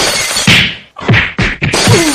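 A rapid run of loud whacks and crashes, about three to four blows a second, with a short falling cry near the end.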